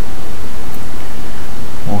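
Loud, steady hiss of background noise with no distinct events, until a man's voice starts speaking at the very end.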